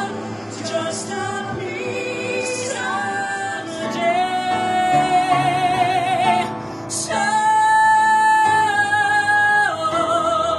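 A male singer sings a show-tune ballad, holding notes with vibrato. His voice swells into a long, loud held note from about seven seconds in, which breaks off just before the end.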